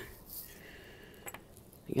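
Faint handling of bead stretch bracelets and a plastic bag on a cloth-covered table: a soft rustle near the start and one small click about halfway through.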